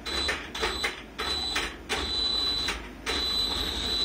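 ARRMA Senton 4x4 RC truck's electric motor whining at a high, steady pitch in about five bursts of throttle, each with a rough rushing noise under it, as it strains to drag a 40 lb dumbbell on a hitch.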